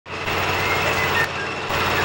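Steady engine and traffic noise with a constant low hum, dipping slightly a little past halfway.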